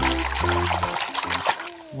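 A hand sloshing and splashing in a basin of soapy water, fading out shortly before the end, with background music underneath.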